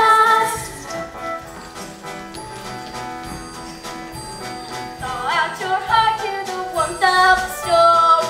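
Stage-musical song with jingle bells in the accompaniment: voices singing at the start and again from about five seconds in, with a quieter instrumental stretch in between.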